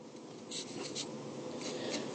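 Stylus writing on a tablet screen: a few short, faint scratching strokes as an equation is inked in.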